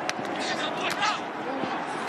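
Football TV broadcast audio: a steady background noise bed with brief snatches of speech, as in a play-by-play commentary during a live play.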